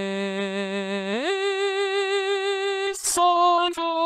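Plogue Alter Ego software singing synthesizer, Bones English voice, singing held vowels of a sung phrase. It holds a low note, slides smoothly up to a higher note about a second in (the plugin's glide between notes), and that note carries a steady vibrato. Near the end a short hissy consonant leads into a new note.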